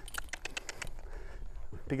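A quick, irregular run of light clicks and rattles from horse tack, the halter and lead-rope hardware and the saddle, as a Friesian turns tightly under a rider, thinning out after about a second over a low rumble.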